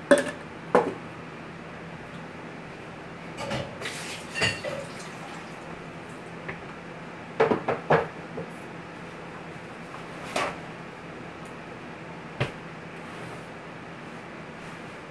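Arena ambience: scattered sharp knocks and claps, loudest at the very start and in a cluster about halfway through, ringing out over a steady hall hum.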